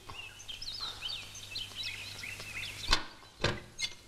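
Small birds chirping in many short, high, quickly rising and falling calls over a low steady hum. About three seconds in there is a sharp knock, the loudest sound, followed by two lighter clicks.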